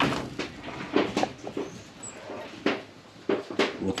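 Several short knocks and rattles as small monkeys clamber over a hanging plastic bucket and rope.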